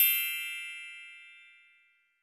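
A bright, bell-like ding from a logo sound effect, ringing out and fading away over nearly two seconds.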